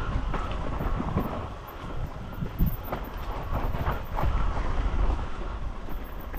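Mountain bike descending a rough, rocky dirt trail: a continuous tyre and frame rumble with irregular clattering knocks as the bike goes over roots and stones.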